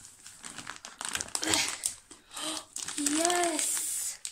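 A plastic mailing bag crinkling and rustling as it is pulled open through a cut hole and a book is drawn out. A short wordless voice sound comes twice in the second half.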